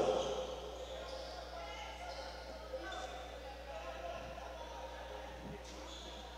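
Quiet gym ambience: faint distant voices and a few basketball bounces echoing in the hall, after a commentator's voice trails off at the start.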